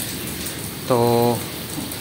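Rain falling steadily onto wet concrete and into a shallow puddle.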